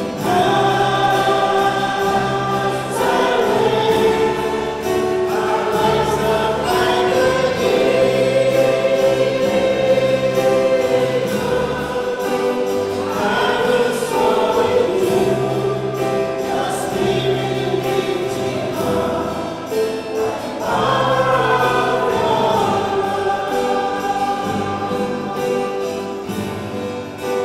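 Church choir singing a hymn with keyboard accompaniment: long held notes, changing every few seconds, over a bass line that moves in steps.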